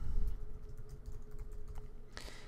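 Computer keyboard being typed on: a quick, irregular run of light key clicks as a word is entered.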